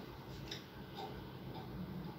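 Faint, regular ticking, about two ticks a second, over quiet room tone.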